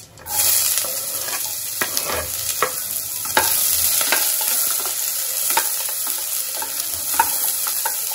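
Chopped onions and green chillies dropped into hot oil start sizzling suddenly, about a third of a second in, and keep frying steadily. A wooden spatula stirs them in the pot, knocking and scraping now and then.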